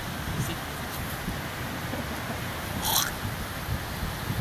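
Hands scraping and patting beach sand while shaping a sand sculpture, with a brief louder scrape about three seconds in, over a steady rumble of wind and surf on the phone's microphone.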